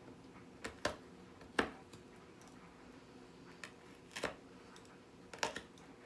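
Metal melon baller scraping and gouging into a raw turnip lid to hollow out a small chimney hole: about half a dozen short, faint scrapes and clicks at irregular intervals.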